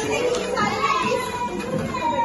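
Young children's voices chattering in a classroom, with one voice drawn out into a long call in the second half.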